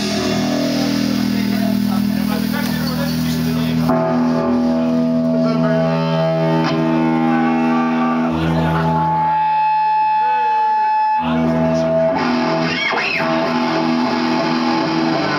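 Live metal band playing electric guitars and bass in long, sustained chords. About nine seconds in the low end drops away for a couple of seconds, leaving a single high guitar note ringing, before the full band comes back in.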